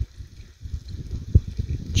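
Low, uneven rumble of wind buffeting the microphone, with a single thump about one and a half seconds in.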